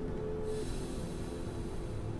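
A hummed note held steady and stopping about half a second in, followed by an audible breath drawn in, a soft hiss lasting until the next phrase.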